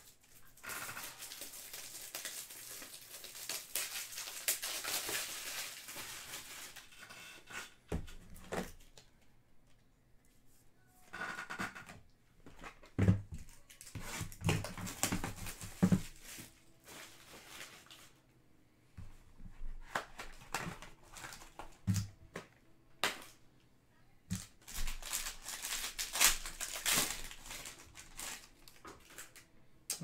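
Hands opening a box of trading cards and tearing into its foil pack: a long stretch of crinkling and tearing wrapper, a few sharp knocks of the cardboard box handled on a table, and more crinkling and tearing near the end.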